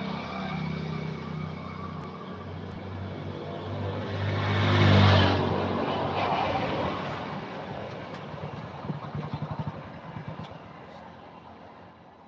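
A motor vehicle's engine passing by. It grows louder to a peak about five seconds in, then fades away.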